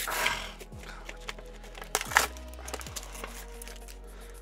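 Background music with steady held tones over the crinkle and rustle of a cardboard-and-plastic blister pack being opened and handled. The rustling is loudest right at the start and again about two seconds in.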